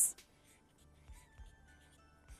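Marker pen writing on a paper card: a string of faint, short scratching strokes, with soft background music underneath.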